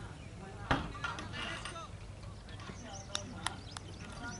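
Open-air cricket ground: faint, distant voices of players on the field, with one sharp knock about 0.7 s in and three light clicks near the end. Birds chirp faintly over a steady low outdoor hum.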